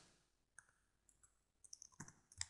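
Near silence, with a few faint clicks of a computer mouse and keyboard as the text cursor is moved in the editor, a handful of them close together near the end.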